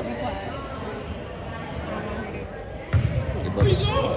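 A basketball bouncing on a hardwood gym floor, with two loud thuds near the end, over steady chatter from people in the gym.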